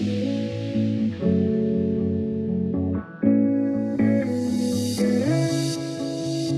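Runway soundtrack music: a track of sustained guitar chords that change about once a second, with a short drop-out around three seconds in and a rising hiss in the second half.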